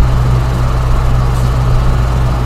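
Steady low hum with a faint hiss running unchanged through a pause in a recorded phone call, with no voices.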